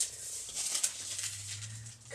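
Faint rustling and light handling of a sheet of parchment paper.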